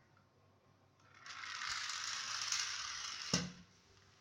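A toy car made from an old computer mouse, its wheels and geared drive whirring steadily on a tile floor for about two seconds, starting about a second in and ending with one sharp knock.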